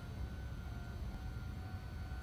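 Red Meitetsu electric train rolling slowly into the platform: a steady low rumble with a faint high whine.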